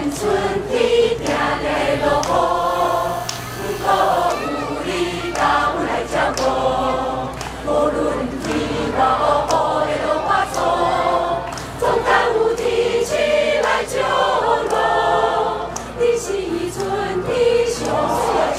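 Mixed choir of men and women singing together in chorus, in sung phrases that run through the whole stretch.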